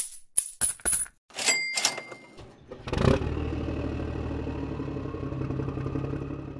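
Cartoon sound effects: a quick run of coin clinks, a short cash-register ding, then a vehicle engine starting about three seconds in and running steadily as the monster truck pulls away.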